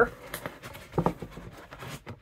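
Foam rubber insert rubbing and scraping against the inside of a metal tin as it is pulled out: a faint, scratchy rustle with one brief louder scrape about a second in.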